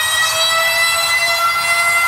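Dance-music breakdown: a single held, siren-like synth tone slowly rising in pitch, with no beat under it.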